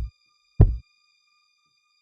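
Sparse deep kick-drum thumps at the start of a music track: one fading just as it opens and another about half a second in, over a faint steady high tone.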